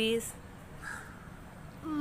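A woman's voice trailing off, a quiet pause, then near the end a child calling out "mummy" in one drawn-out call.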